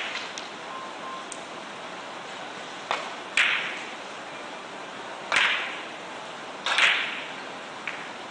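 Sharp clacks of billiard balls striking, from play on other tables, each with a short echo off the hall: a faint one about three seconds in, then louder ones a second or two apart, the last a quick double.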